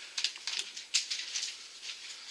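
Makeup brush being handled with eyeshadow: a string of short, light clicks and scratches, several times a second.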